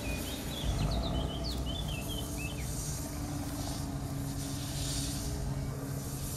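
Woodland ambience: small birds chirping in quick, short, high calls through the first half, over a steady rushing background with a low hum underneath.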